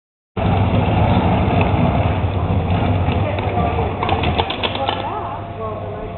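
Truck engine running at a truck pull, a heavy low rumble that eases off after about four seconds, with voices and a few sharp clicks near the end.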